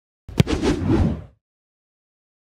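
Intro logo sting sound effect: a sharp hit a little under half a second in, then a rumbling whoosh that fades out about a second later.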